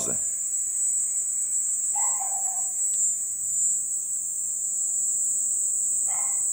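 Crickets chirping as one continuous, steady high-pitched trill.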